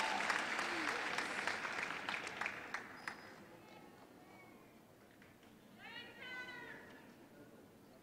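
Audience applause with scattered claps, fading away over the first three seconds and leaving a quiet hall. About six seconds in comes a brief high-pitched voice, like a whoop or call from the audience.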